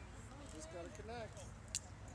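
Faint, indistinct chatter of spectators and players at a youth baseball game, with one short sharp click a little before the end.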